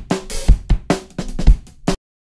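Acoustic drum kit stems playing back: kick, snare and cymbals in a steady groove, with a kick about every half second. Playback stops suddenly at the very end.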